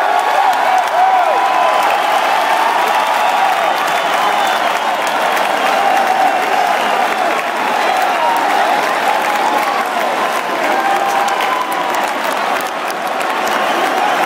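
A large basketball crowd cheering, shouting and clapping in an indoor arena: a loud, unbroken din of many voices with claps on top, celebrating the home team's win.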